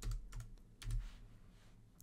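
A short run of keystrokes on a computer keyboard, typing a word, over about the first second.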